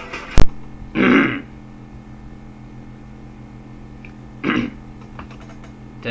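A sharp click just under half a second in, then a person clearing their throat about a second in, with a second short throat sound about four and a half seconds in, over a steady low hum.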